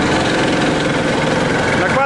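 Homemade karakat all-terrain vehicle's engine running steadily as it drives over grassy ground.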